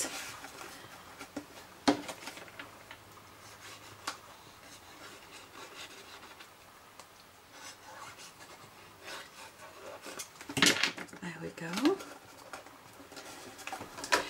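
Hands handling and rubbing folded card stock as a small card box is pressed and glued, quiet overall. There are a couple of light clicks and a louder scraping of card near the end.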